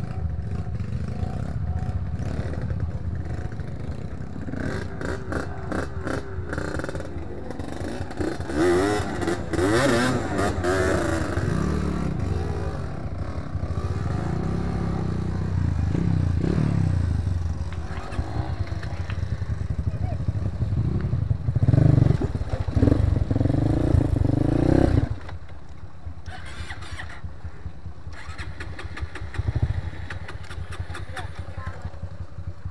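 Dirt bike engine on an enduro trail, revving up and down in repeated surges as the throttle is worked, then dropping suddenly to a lower, steadier running about 25 seconds in.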